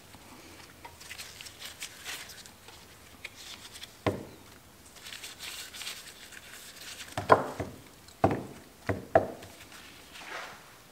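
Gloved hands handling softened rubber CB750 carburetor intake manifolds on a shop towel: faint rustling, then a few short knocks and squeaks as the pieces are worked and set down, the loudest about seven seconds in.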